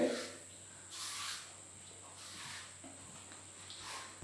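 Paintbrush strokes spreading limewash on a wall: a few faint swishes, roughly a second apart.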